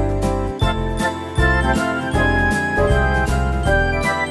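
Background music with a steady beat, a moving bass line and bright melody notes.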